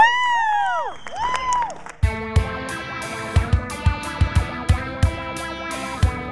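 Background music: a few swooping, sliding notes, then about two seconds in a guitar-led track with a steady drum beat starts.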